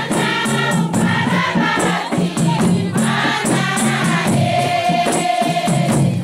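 Comorian tari music: a large chorus of women singing together over a steady beat of hand-struck frame drums.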